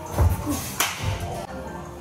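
Background music with a steady bass beat. A single sharp crack comes a little under a second in, as the pitched baseball reaches the plate.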